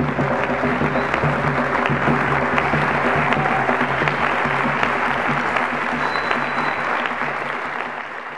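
Audience applauding, with music playing underneath. The applause tapers off near the end.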